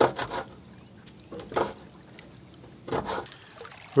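Water splashing and lapping against a small boat in a few short bursts.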